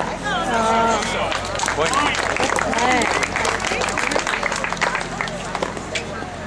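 A paddle hits a plastic pickleball, then voices call out over scattered clapping as the rally ends.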